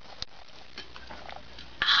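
Someone drinking from a metal drink can: faint sips and swallows with a small click about a quarter second in, ending near the end in a loud breathy "ahh" of satisfaction.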